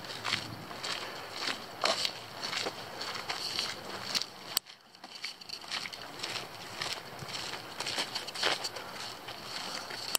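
Footsteps on a dirt forest trail, irregular steps with rustling, broken by a sudden cut about halfway through before the steps go on.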